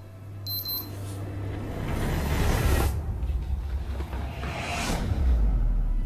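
A deep, low rumble that grows louder over the first two seconds and stays strong, with a few faint swishes.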